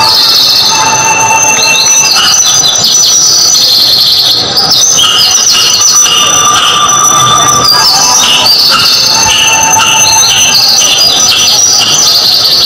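Loud, shrill, distorted tones, steady high notes that change pitch in steps like a melody, played over a loudspeaker as the sound track for a staged performance.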